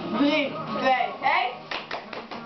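A child's voice with a wavering pitch, then a quick run of hand claps starting near the end.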